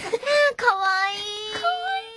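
Excited, laughing talk, then a high voice holding one long, steady note from just under a second in.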